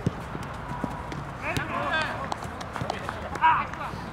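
Players running and kicking a football on artificial turf: many short taps of footfalls and ball strikes, with players' shouts about one and a half seconds in and, loudest, about three and a half seconds in.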